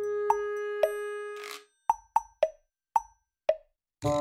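Background music at a break in the tune: a note slides up and is held for about a second and a half, then a series of seven short, hollow, pitched plops with near silence between them.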